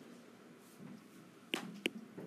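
Two sharp taps of a stylus tip on an iPad's glass screen while handwriting, about a third of a second apart, near the end, over faint room noise.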